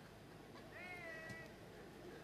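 A single faint, high-pitched drawn-out call near the middle, lasting under a second.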